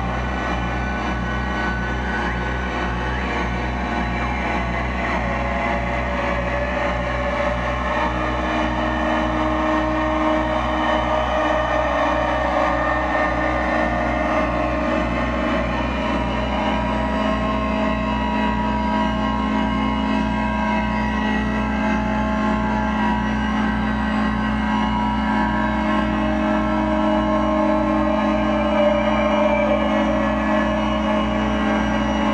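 Live electronic noise music played through effects pedals and a mixer: a loud, dense drone of layered sustained tones over a rapid low pulsing throb, the tones shifting in pitch as the knobs are turned.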